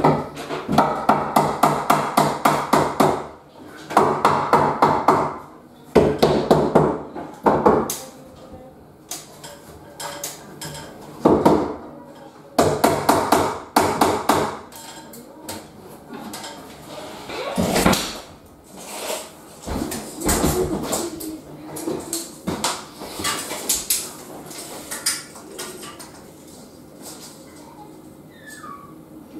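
Power screwdriver driving screws into a timber stud frame, in repeated bursts of one to three seconds that come thick in the first half and more sparsely later.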